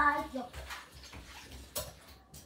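Water running from a kitchen tap, with a short dish knock near the end.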